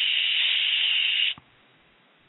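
A man imitating a small jet engine with his mouth: a steady, breathy hiss that cuts off abruptly a little over a second in.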